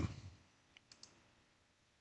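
A few faint computer mouse clicks about a second in, otherwise near silence.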